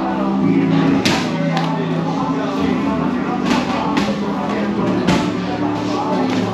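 Background music plays steadily. Over it come four or five sharp smacks of boxing gloves landing on gloves or body during sparring, the first about a second in and the rest in the second half.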